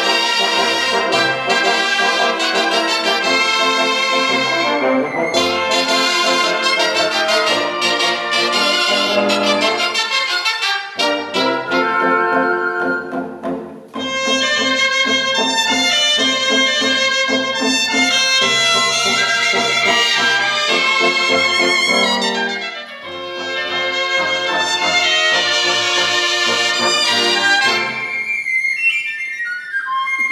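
A cobla, the Catalan sardana band of double-reed tenoras and tibles, trumpets and double bass, playing a sardana live, led by its brass. The full band drops back briefly twice and thins to a quiet single melodic line near the end.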